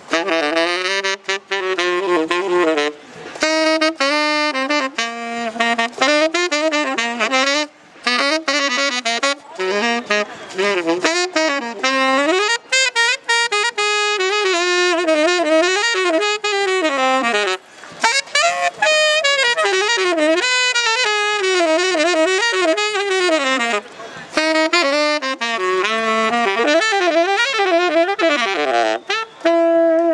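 Unaccompanied tenor saxophone improvising jazz, with fast runs up and down the scale in phrases broken by short breath pauses.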